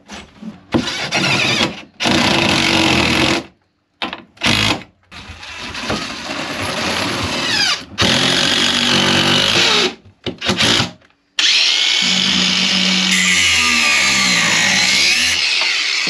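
Cordless drill working into a wooden boat frame in a series of loud bursts, several of them starting and stopping abruptly. Its pitch rises and falls through the longer runs.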